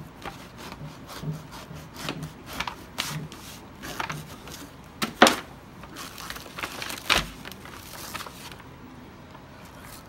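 A long kitchen knife cutting through a ripe jackfruit: a run of short scraping, crunching strokes through the rind and fibrous core, with two louder sharp knocks about five and seven seconds in as the halves are worked apart.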